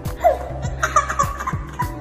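Laughter and giggles over background music with a steady beat.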